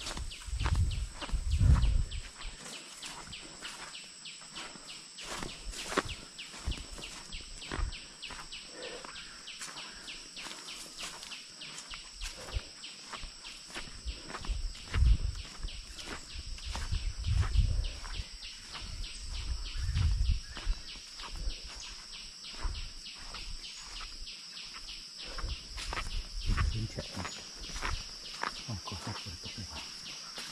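Footsteps crunching through dry leaf litter and undergrowth, with heavier thumps every few seconds, over a steady high-pitched insect drone.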